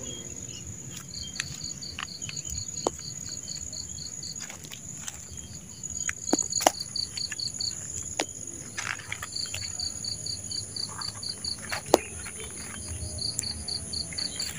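Insects chirping: a steady high-pitched buzz under runs of rapid chirps, about six a second. Several sharp clicks or snaps cut through, the loudest near the end.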